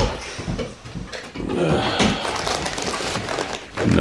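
A dog making short whining sounds, with the rustle of a paper takeaway bag.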